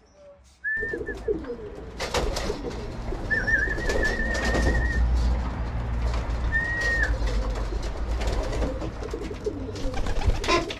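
Racing pigeons cooing at the loft over a steady low rumble. The sound starts abruptly about a second in.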